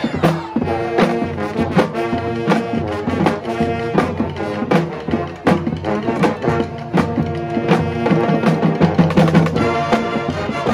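High school marching pep band playing: brass horns such as trumpets and trombones over a drum line keeping a steady beat.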